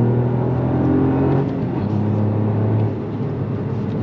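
Toyota GR Yaris's turbocharged three-cylinder engine, running on a RaceChip tune, pulling under acceleration as heard from inside the cabin. Its note steps down in pitch about a second and a half in and gets quieter about three seconds in.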